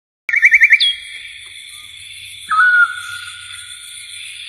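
Bird-like chirping and whistling: a quick run of four rising chirps, then a whistle that drops in pitch and holds, and about two and a half seconds in a louder short whistle that dips and levels off, over a faint steady high tone.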